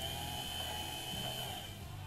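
Windshield-wiper-motor power feed on a Sieg X2 mini mill running under its speed controller: a quiet, steady high whine over a low hum. The whine fades out near the end as the speed knob is turned down toward a creep.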